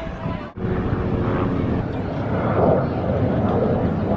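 Busy beach ambience: indistinct chatter of a crowd with a low rumble of wind on the microphone, broken by a brief dropout about half a second in.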